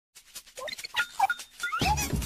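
Cartoon characters' high, squeaky chirping voices: a string of short pitched calls and little gliding squeaks. Near the end, bright music with a bass line starts up.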